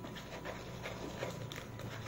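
Faint, irregular ticking and rustling from a kitten nosing about with its head down inside a cardboard box.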